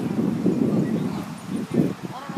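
Wind buffeting the camera microphone outdoors: an uneven, gusty rumble with no clear voices in it.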